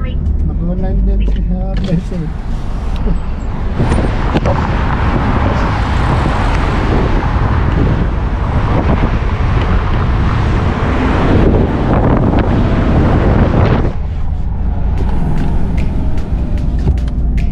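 Road and wind noise inside a moving car, a steady low rumble that swells to a loud rush from about four seconds in and drops back about two seconds before the end.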